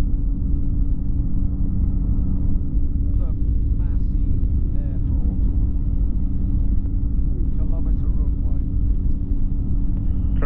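Flexwing microlight's engine droning steadily in flight, with a low rumble of wind and airframe. Faint voices come through briefly about three seconds in and again near eight seconds.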